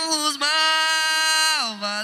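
A break in a Brazilian funk (baile funk) track: a single held vocal note with no beat under it, sliding down in pitch near the end.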